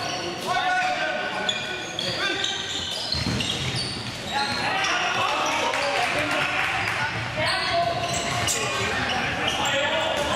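Indoor handball play in a large echoing sports hall: the ball bouncing on the court, shoes squeaking on the floor, and players' voices calling out.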